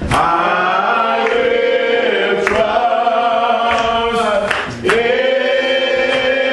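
A man singing a slow hymn through a microphone, holding long notes, with a short breath just before five seconds in.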